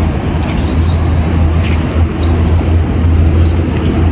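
Steady outdoor rumble of wind and distant traffic on a handheld phone's microphone, with short high chirps recurring through it.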